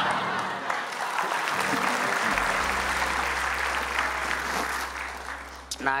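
Studio audience applauding, dying down near the end.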